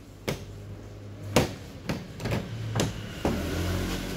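Plastic casing panel of a Hitachi EP-EV1000 air purifier-dehumidifier being handled, giving four sharp clicks and knocks, the loudest about a second and a half in, over a low steady hum.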